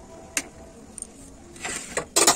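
Kitchen handling while eggs are cracked into a small steel bowl: a sharp click about a third of a second in, a fainter tick about a second in, and a short rustle near the end.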